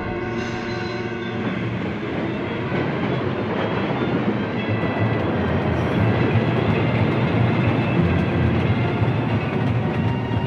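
Sound effect of a speeding passenger train running along the rails, a continuous dense noise, with music playing underneath that is clearest in the first couple of seconds.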